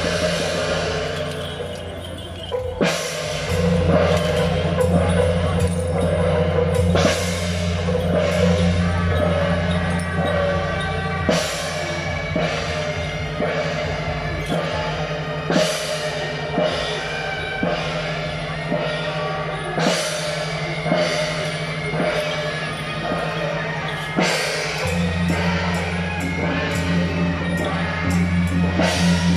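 Temple-procession percussion music: drums and large brass hand cymbals clashing in sharp, irregular crashes, over a steady low drone that drops away for most of the middle and returns near the end.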